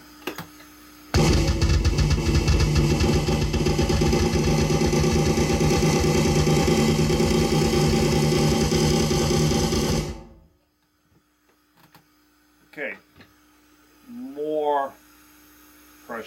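Very fast, even snare roll on an electronic drum kit, played loose with the sticks flicked by the fingers, a hybrid between an open roll and a buzz roll. It starts about a second in and stops abruptly after about nine seconds.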